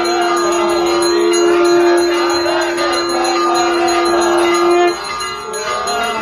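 Temple bells ringing on and on during aarti, over a single long, steady held note that stops suddenly about five seconds in.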